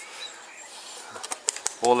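Faint birds chirping over quiet outdoor background, with a few light clicks about a second and a half in; a man's voice starts just before the end.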